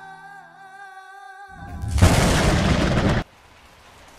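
Background music, then a loud thunderclap sound effect that swells in about two seconds in and cuts off abruptly about a second later.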